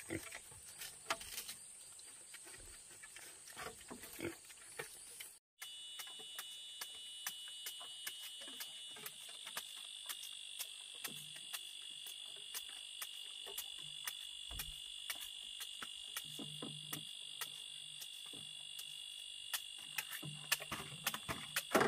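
Insects chirping in a steady high drone, broken by many short sharp clicks. Before a cut about five seconds in, there is soft pattering and rustling from a young wild boar feeding on the bamboo floor.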